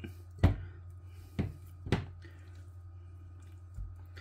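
Three sharp knocks of hands and raw chicken thighs against a glass mixing bowl as the chicken is tossed in flour, with a softer thud near the end, over a steady low hum.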